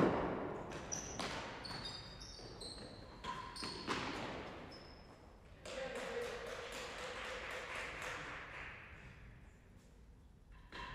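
Real tennis rally in an enclosed court: a hard racket strike on the ball at the start, then several more ball impacts ringing off the walls and floor, with shoe squeaks. From about five and a half seconds in, a few seconds of clapping that fades out, as the point ends.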